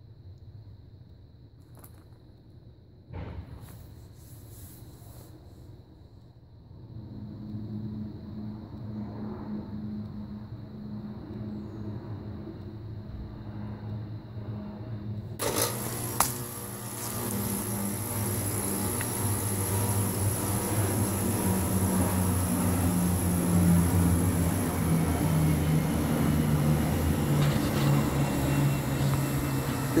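Encon High Breeze ceiling fan running: a low electric motor hum that comes in a few seconds in and builds steadily louder. About halfway through, a strong rush of air from the spinning blades joins it.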